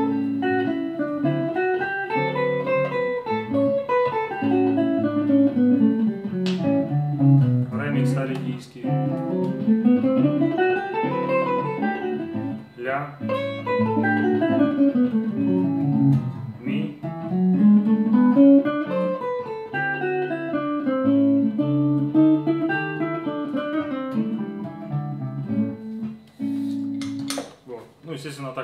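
Hollow-body archtop electric guitar playing Mixolydian-mode scale runs, climbing and falling step by step several times over steady low held notes. It shows the seven-note Mixolydian sound used over the dominant chords of a blues.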